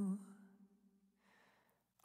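The singer's held note fades away, then after a near-silent pause there is a faint intake of breath, a little past a second in, before the next sung line.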